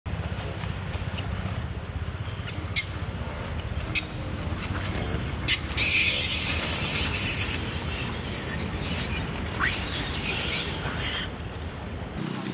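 Infant long-tailed macaque giving a harsh, high-pitched distress scream that starts about six seconds in and lasts about five seconds while another monkey grabs it. A few short sharp chirps come before it.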